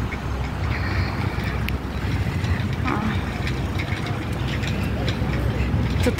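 Outdoor city-park ambience: a steady low rumble with faint distant voices.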